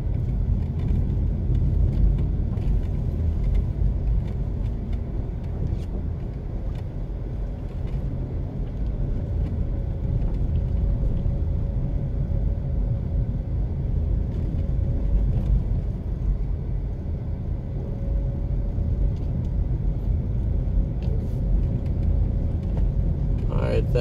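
A car heard from inside its cabin while driving along a road: a steady low rumble of engine and tyres, with a faint steady hum through the middle stretch.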